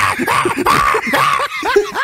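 Several people laughing together in short, overlapping bursts.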